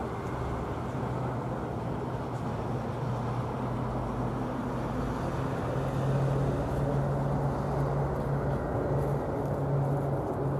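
A steady low motor hum over a rumbling background noise. About six seconds in, the hum steps up in pitch and grows a little louder.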